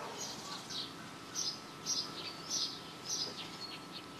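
Birds chirping quietly: short, high chirps every half second or so over a faint steady background.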